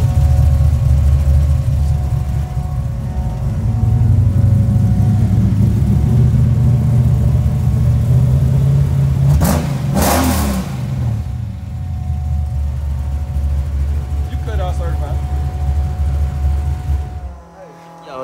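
Chevy S10's swapped-in 350 V8 idling with a steady low rumble through its freshly fitted exhaust, quiet. A short loud rush of noise comes about ten seconds in, and the rumble cuts off near the end.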